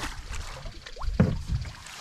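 Lake water splashing and sloshing as a landing net is scooped up with a trout beside an aluminium canoe, with a light knock or two.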